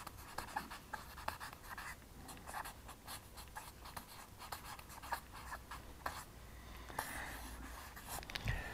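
Marker pen scratching and squeaking on flip-chart paper as capital letters are written: a quick run of short strokes, then a longer drawn stroke near the end.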